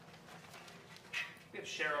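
Quiet stage room tone with a faint steady low hum, a brief sharp sound about a second in, then a voice starting to speak near the end.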